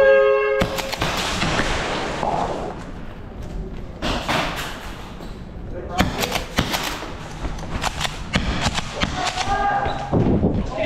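A short electronic start buzzer sounds for about half a second, signalling the start of an airsoft round. It is followed by players rushing and gear rustling, with a run of sharp cracks from airsoft shotgun shots and hits, clustered from about six to nine seconds in.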